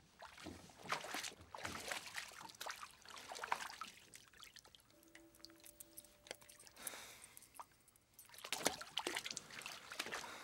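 Water sloshing and trickling in irregular bursts in a partly flooded boat, with small clicks and splashes. A brief faint held tone sounds about halfway through.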